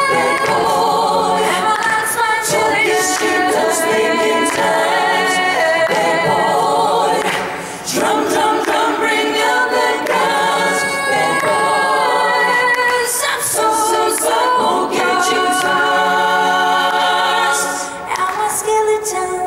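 A mixed group of male and female voices singing a cappella into handheld microphones, a woman's lead voice carried by close harmonies from the others. The singing runs on without a break, easing briefly about halfway.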